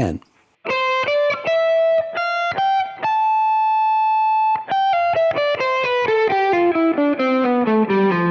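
Electric guitar with a clean tone playing a C major scale one picked note at a time: an even run up to a top note held for about a second and a half, then stepping back down past the starting note.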